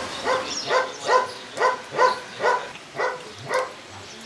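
A dog barking eight times in a steady run, about two barks a second.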